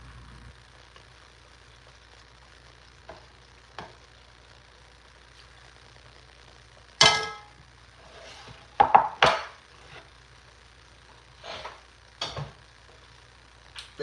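Metal tongs clinking against a stainless steel stockpot and a ceramic bowl while spaghetti is served. There are a few scattered short knocks and clinks, the loudest about seven seconds in and a quick cluster around nine seconds.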